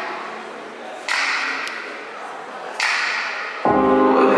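Edited intro sound effects: two sudden hiss-like hits, about a second in and just under three seconds in, each fading away. Near the end a song with a singing voice starts.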